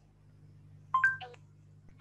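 BlindShell Classic 2 mobile phone sounding a short electronic tone sequence about a second in, a few stepped beeps that rise then fall in pitch, from its voice-control feature after a spoken command. A low steady hum sits underneath.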